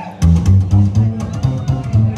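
Upright bass played slap-style on its own: low walking notes with the sharp clicks of the strings slapped against the fingerboard in a quick, even rhythm, starting about a quarter-second in.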